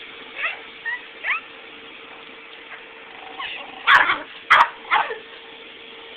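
Chihuahua giving a few short, high, rising yips, then three louder, sharp barks about four seconds in. The small dog is barking at a person approaching its owner.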